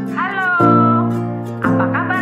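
A song: a high voice slides down onto a long held note, then starts a new line with vibrato near the end, over plucked acoustic guitar chords.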